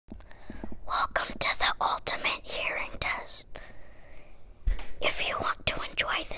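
A boy whispering close to the microphone, in short breathy phrases.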